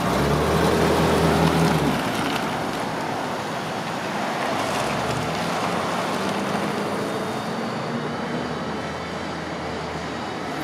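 1971 Mercedes-Benz 350SL's V8 engine with dual exhaust pulling away and driving off, loudest for the first two seconds, then fading into steady road traffic noise.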